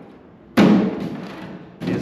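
A single thump about half a second in as a carbon fiber duct piece is set down against its mating piece on a folding table, dying away over about a second.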